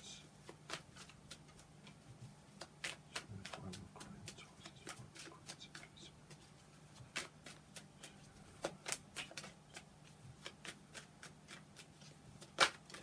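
Deck of tarot cards shuffled overhand by hand: a faint, quick run of irregular soft clicks as the cards slip and tap together.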